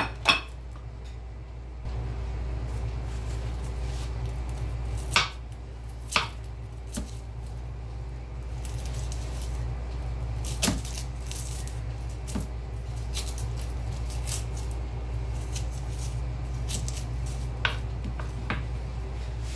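Kitchen knife cutting onion and garlic on a wooden cutting board: a few sharp knocks of the blade on the board and, from about halfway, light crackly cutting sounds. A steady low hum runs underneath and gets louder about two seconds in.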